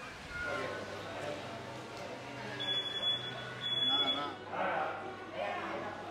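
Two short, high-pitched electronic beeps, each about half a second long, over faint background voices.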